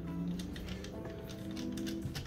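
Quiet background music with sustained held notes. Over it come faint small clicks from a screwdriver turning the screws on a laptop's plastic back panel.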